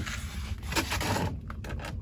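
Rustling and scraping of a paper planting chart and a clear plastic humidity dome as they are handled and lifted off a seed-starting tray, in a few uneven scrapes.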